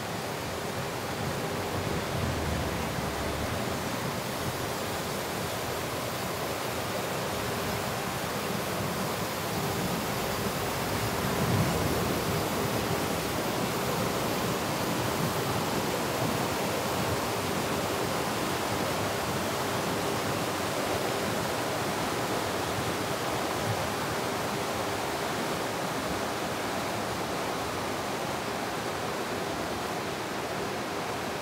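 Mountain stream rushing over rocks, heard from the road above as a steady wash of water noise. A brief low bump, the loudest moment, comes about a third of the way in.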